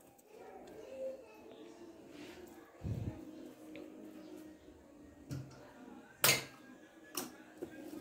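Faint voices in the background, with a few short knocks and clicks such as utensils make when handled. The sharpest click comes about six seconds in.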